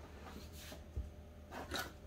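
Faint handling sounds of objects being moved on a table and in a cardboard box: soft rubbing and rustling, with a soft thump about halfway through and a brief rustle near the end.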